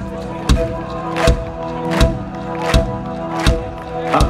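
Live rock band playing an instrumental passage: held keyboard chords under a sharp beat that falls about every three-quarters of a second.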